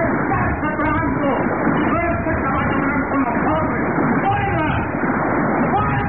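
Voices talking throughout, several at once like a crowd's murmur, on a muffled, narrow-band old radio recording.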